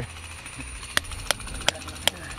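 Steel hammer tapping on rock, three sharp strikes starting about a second in, spaced about a third of a second apart, to crack away the rock above a Herkimer diamond crystal pocket.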